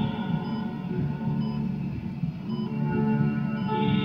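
Slow ambient music with long held notes, the soundtrack of a projected animated film.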